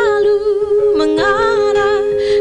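A woman singing live, holding notes with vibrato; about a second in her pitch drops and she moves into another long held note.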